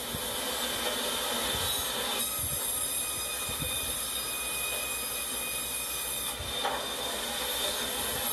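Sawmill machinery running: a steady, dense mechanical noise with several high, thin whining tones over it, growing fuller about two seconds in.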